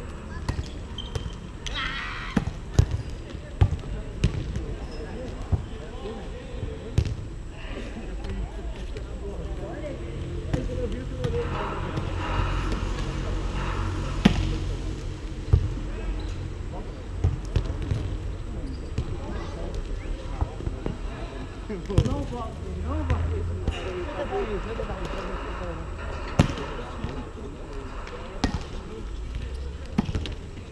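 Sharp slaps of hands and forearms on a volleyball, every few seconds, as the ball is hit back and forth in a rally on a sand court.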